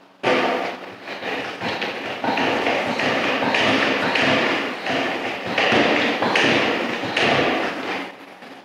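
A pump-up garden sprayer's wand spraying sealer onto concrete in bursts of hiss, with a microfiber flat mop scrubbing across the floor and some light knocks.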